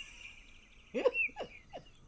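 A woman laughing in a few short, high, falling bursts, over a faint thin high whine.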